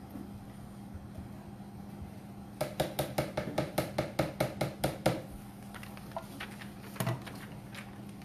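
A spoon knocking and scraping inside a tin can of coconut cream as the cream is dug out into a blender. It comes as a quick run of sharp clicks, about six a second, for a couple of seconds midway, then a couple of lone knocks.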